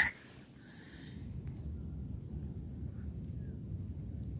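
Quiet outdoor background in a forest: a steady low rumble, with a few faint, brief higher sounds scattered through it.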